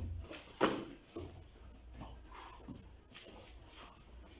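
Light kickboxing kicks landing on a partner's thigh: several dull thuds, the loudest about half a second in, with footwork shuffling on the training mat between them.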